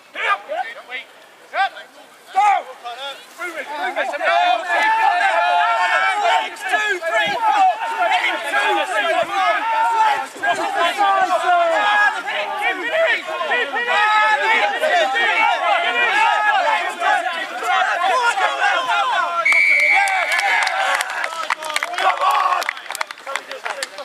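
Many men shouting at once, players and supporters urging on a rugby driving maul, building up a few seconds in and staying loud. Near the end a short, steady high whistle blast sounds over the shouting, as the maul reaches the try line.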